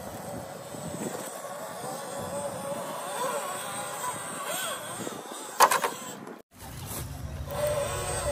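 Electric motor and geared drivetrain of a 1/10-scale RC rock crawler whining as it climbs rocks, the pitch rising and falling with the throttle. A sharp knock comes a little past halfway, and the sound cuts out briefly near the end.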